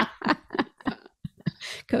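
A woman laughing softly in short breathy bursts that trail off.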